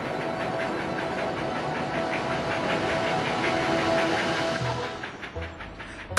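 Cartoon steam locomotive sound effect: a steady rhythmic chugging and rattling of the train running on the rails, dying away near the end.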